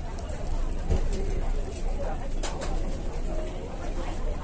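Busy fast-food restaurant ambience: indistinct chatter of diners with a few sharp clinks of cutlery and dishes, the clearest about two and a half seconds in.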